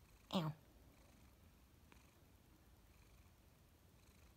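Long-haired calico cat giving one short meow, falling in pitch, about a third of a second in.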